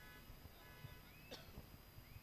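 Near silence: faint venue room tone in a pause of the commentary, with a couple of faint short rising chirps.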